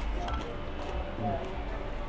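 Faint background voices and music with a steady low rumble: general restaurant ambience, and no distinct nearby sound.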